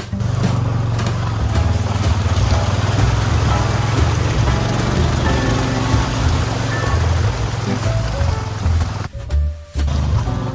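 Honda Pioneer 500 side-by-side on Camso X4S rubber tracks running slowly through mud, with a steady low engine and drivetrain sound and track noise. Background guitar music plays over it, and the sound briefly drops away near the end.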